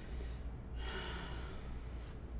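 A short, hissy breath from a person, lasting about a second and starting near the middle, over a low steady room hum.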